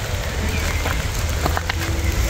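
Steady rain with a few separate drops tapping in the second half, over a low rumble.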